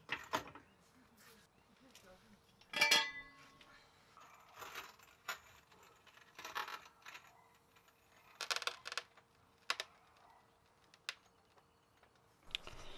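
Scattered light metallic clinks and clicks, a dozen or so spread unevenly, the loudest a ringing clink about three seconds in.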